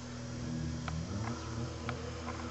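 A steady low buzzing hum, with a couple of faint clicks.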